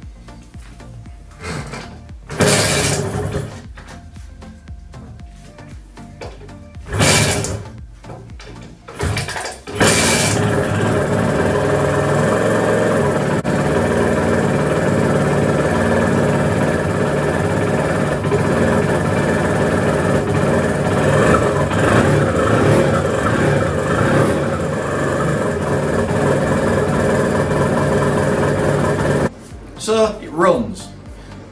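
Honda NSR250 MC16's two-stroke V-twin being started: a few short bursts, then about ten seconds in it catches and runs steadily. It is firing on only its rear cylinder. The running cuts off suddenly near the end.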